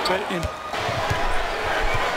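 A basketball being dribbled on a hardwood court: a string of dull thumps from about half a second in, over the steady murmur of an arena crowd.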